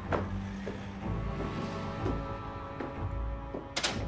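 Background drama score of sustained, held tones, with a short sharp thump just before the end.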